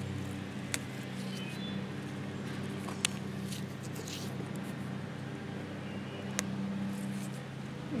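A motor runs with a steady low hum throughout, with three faint sharp clicks spread through it.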